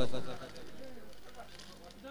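A man's commentary voice trailing off, then faint outdoor background with soft, wavering low calls.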